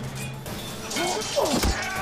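Dramatic score music with a low drone, under men's shouts and battle cries from a sword fight; several falling yells start about a second in, with a heavy thud just after the middle.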